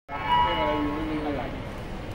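A young woman's voice over a handheld microphone and PA speakers, one drawn-out, gliding call lasting about a second and a half. It is loudest right at the start and then gives way to the steadier hum of the hall.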